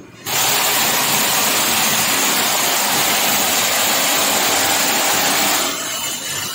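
High-pressure water jet hissing from the spray lance of an electric hot water pressure washer. It starts abruptly as the trigger opens, runs loud and steady, and drops somewhat in level near the end.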